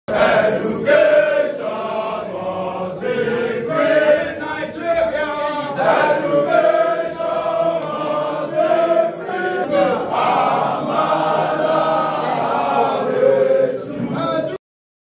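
A group of men singing a song together in unison, voices holding long notes.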